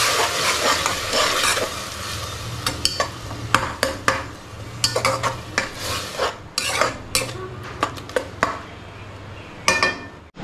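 Onions and tomato paste sizzling in a metal kadai while a spoon stirs them, scraping and clicking against the pan. The sizzle is strongest in the first couple of seconds and then thins, leaving a run of sharp spoon clicks, with a louder clink near the end.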